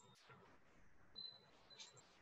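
Near silence: faint background noise on the call line, with a brief faint high tone a little past a second in.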